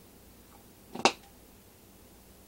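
A single short, sharp click about halfway through, over quiet room tone.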